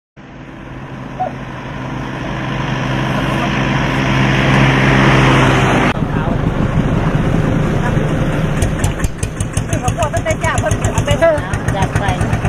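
Road traffic: a vehicle's engine running steadily and growing louder as it approaches, cut off abruptly about six seconds in. After the cut come voices and light crinkling of plastic bags being handled.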